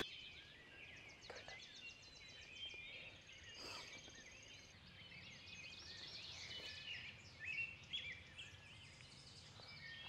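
Faint dawn chorus of songbirds: scattered high chirps and whistles, with a rapid trill running for a few seconds in the first half.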